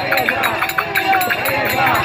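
A dense crowd of many voices shouting and calling over one another, with quick scattered knocks or footfalls underneath.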